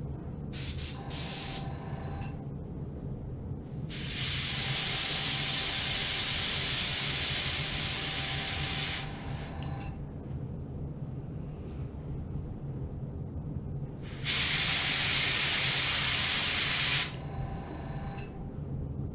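Airbrush spraying paint: two brief puffs of hiss, then a steady hiss of about five seconds, and a second one of about three seconds near the end.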